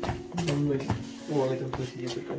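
Low, indistinct talking in two short bursts over a steady low hum.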